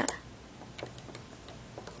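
A few faint, light clicks of a plastic loom hook and rubber bands against the pegs of a rubber-band bracelet loom as the bands are hooked over.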